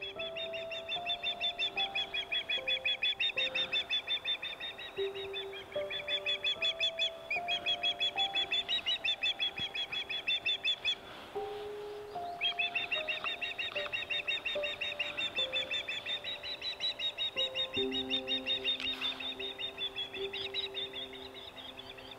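Osprey calling: long runs of rapid, high, whistled chirps, about four a second, breaking off briefly twice. Soft background music with slow sustained notes plays underneath.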